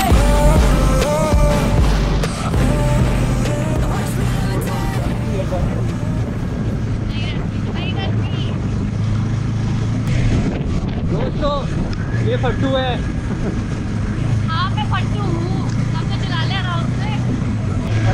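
KTM Duke 390's single-cylinder engine running at a steady cruise, with wind rushing over the helmet camera's microphone. Background music fades out in the first two seconds.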